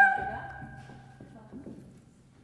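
A soprano's held high note and the piano cut off at the very start, and their sound dies away in the hall's reverberation over about a second and a half. Faint clicks of high heels on a wooden stage floor follow.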